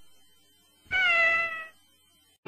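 A kitten's single short meow about a second in, falling slightly in pitch: the cat meow of the MTM Enterprises closing logo, heard off an old film soundtrack.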